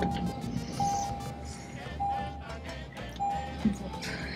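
A car's warning chime sounding the same single steady tone over and over, about once a second, with a low rumble underneath.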